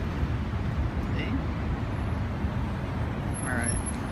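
Steady street traffic noise, a continuous low rumble of passing vehicles.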